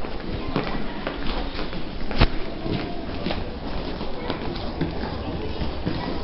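Footsteps of many people on a hard tiled floor and stone stairs, shoes clicking irregularly over a busy crowd hubbub. One sharp, louder click comes about two seconds in.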